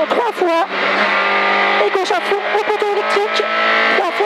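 Peugeot 106 F2000 rally car's four-cylinder engine heard from inside the cabin, running at high revs. Its pitch dips sharply and climbs back near the start, holds steady for about a second, then wavers up and down.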